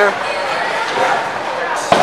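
Bowling alley background noise, a steady din of the busy hall, with one sharp knock near the end.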